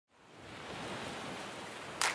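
A steady hiss fading in from silence over about half a second, the noise swell that opens a logo intro sound effect.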